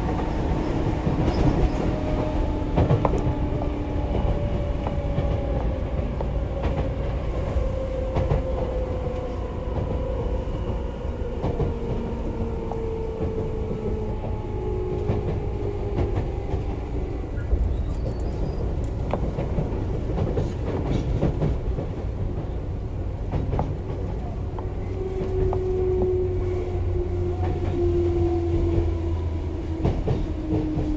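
Tobu 10030 series field-chopper electric train running, heard from inside motor car MoHa 15663: steady wheel and rail rumble with the clack of rail joints, and the traction motor whine falling slowly in pitch through the first half.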